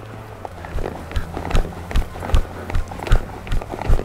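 Hoofbeats of a horse trotting on a sand arena: even thuds about two to three a second, settling into a steady rhythm about a second in.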